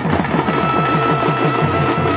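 Live Tamil folk drumming: a fast, even run of drum strokes, about eight a second, each stroke dropping slightly in pitch, with one high note held steady from about half a second in.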